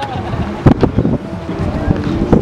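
Wind buffeting the microphone in gusts, with people talking indistinctly nearby.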